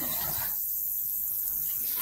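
A pause in speech filled by steady background hiss from a live broadcast audio feed, with a thin high-pitched whine above it.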